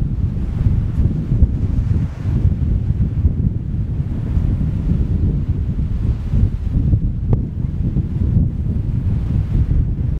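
Wind buffeting the camera's microphone: a loud, unsteady low rumble.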